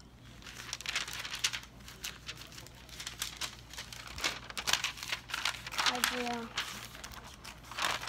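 Paper pages of a spiral-bound sketchbook being flipped and handled, with repeated irregular rustles and crinkles.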